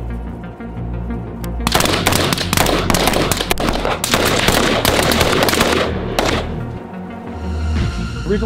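Rapid rifle fire, a dense run of shots starting about two seconds in and stopping about six seconds in, over background music.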